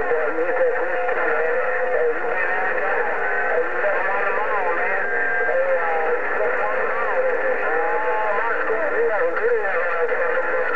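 A President HR2510 radio's speaker playing a busy signal on 27.0850 MHz. The audio is narrow and radio-filtered, with a steady whistle and short warbling, sliding tones over it, and garbled voice underneath.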